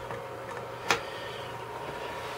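Steady low electrical hum with a faint high tone above it, and one sharp click about a second in.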